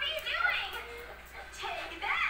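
A toddler's high voice, vocalizing without clear words in two short stretches, one at the start and one near the end.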